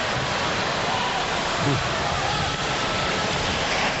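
Steady roar of a large hockey arena crowd, a dense wash of many voices with no single sound standing out.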